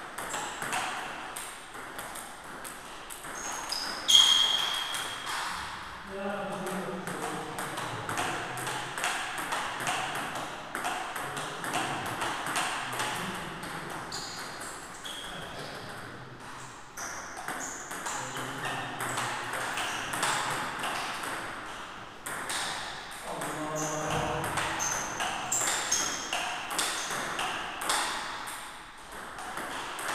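Table tennis ball clicking back and forth off bats and table in a steady practice rally, with more ball clicks from other tables in the hall. The loudest hit comes about four seconds in.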